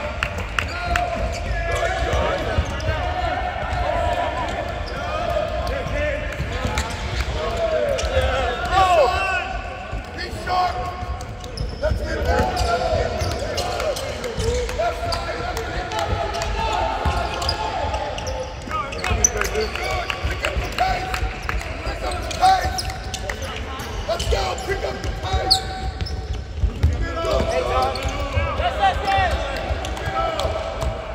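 Basketballs bouncing on a hardwood court during a team practice drill, with shouted voices and echo from the large arena.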